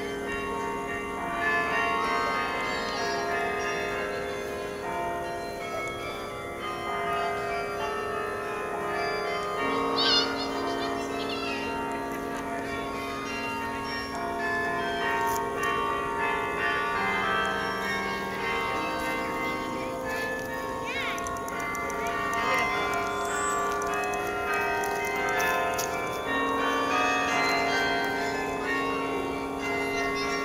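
Bok Tower's carillon playing a melody: many bronze bells struck in turn, their tones ringing on and overlapping.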